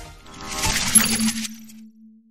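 The tail of electronic outro music fades out, then a logo sound effect: a shimmering swell with a sharp, bright metallic ping about a second in. It dies away, leaving a low steady hum tone.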